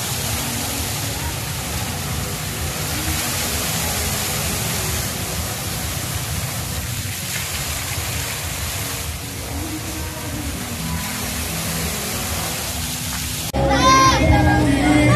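Fountain water jets spraying and splashing in a steady hiss, cutting off abruptly just before the end.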